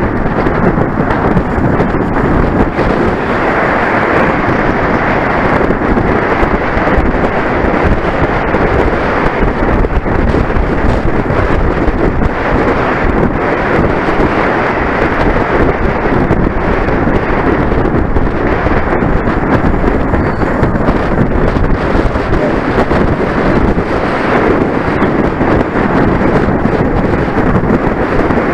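Loud, steady wind noise buffeting the microphone of a camera mounted on a racing bicycle moving at race speed, masking any other sound.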